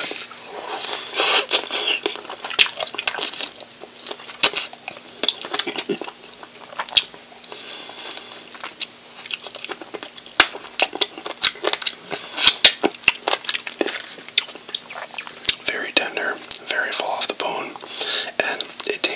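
Close-miked eating of sauce-covered chicken wings: chewing, biting meat off the bone, sucking the bone and lip smacks, with many sharp wet clicks throughout.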